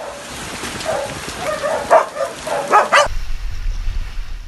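Several dogs whining in short, repeated calls over a steady hiss. About three seconds in the dogs give way to a strong, low rumble of typhoon wind buffeting the microphone.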